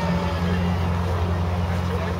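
An engine running steadily, a low even hum, with people talking.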